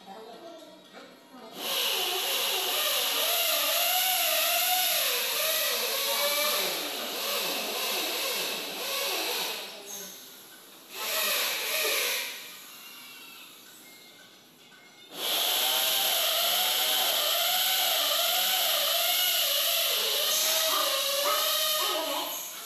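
Handheld electric drill running in long bursts, its pitch wavering as it works into the aluminium window frame: on from about a second and a half in, stopping near the middle, a short burst, then running again from about three quarters of the way through.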